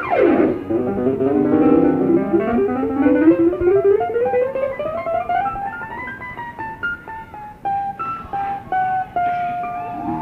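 Live rock band playing an instrumental lead passage: quick plucked notes, then a sudden swooping drop in pitch, a long slow glide rising over about five seconds, and a run of stepped notes ending on a held one.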